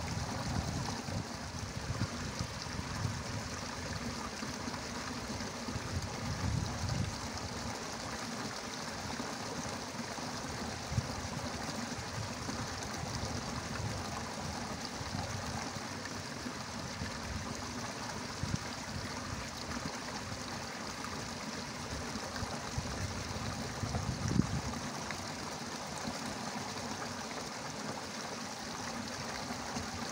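Steady rushing and trickling of water flowing in a small muddy irrigation ditch, with irregular low rumbles and a couple of brief soft knocks.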